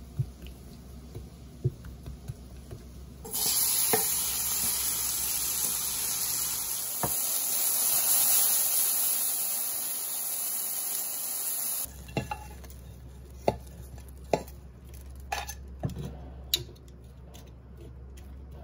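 Cubed chicken searing in a nonstick frying pan, a loud steady sizzle with a few knocks, which starts about three seconds in and cuts off suddenly near the middle. Before it, soft small clicks and scrapes of a knife on seasoned raw chicken on a wooden cutting board; after it, sharp taps and clacks of metal tongs on the wooden board.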